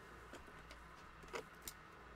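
Near silence: low room hum with a few faint short clicks, the clearest two about one and a half seconds in.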